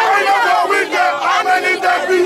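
A crowd of protesters shouting together, many voices overlapping, loud throughout.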